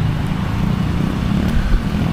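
Street traffic with motorcycles and cars passing, a steady low rumble.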